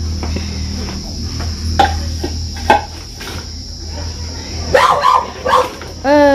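A dog barks a few times, short and sharp, with a cluster of barks near the end, over the steady high chirring of night insects such as crickets.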